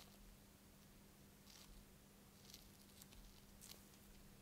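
Near silence, with about five faint, soft brushes of a gloved fingertip on the Samsung Galaxy A34's glass touchscreen as it zooms the camera view, over a faint steady low hum.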